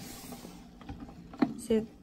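Small internal aquarium filter running with a vibrating buzz while it fills with water, with scattered clicks as it is handled against the tank, one sharper click a little before the end.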